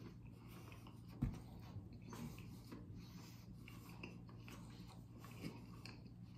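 Quiet eating: faint chewing and breathing over a steady low hum. About a second in, a single low thump as a glass hot sauce bottle is set down on the table.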